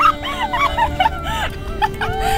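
A girl's short high-pitched squeals and giggles, several a second, over slow background music with long held notes.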